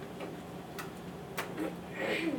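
A few light clicks or taps over a steady room hum, the two loudest a little over half a second apart in the second half.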